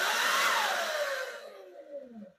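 Electric dirt bike motor driven at full throttle with the wheel spinning free, on a new FarDriver controller tune. The motor whines with a rush of noise, and the whine falls steadily in pitch as it winds down after the throttle is let go.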